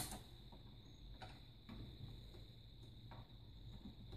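Near silence: room tone with a faint steady high whine and a few faint ticks.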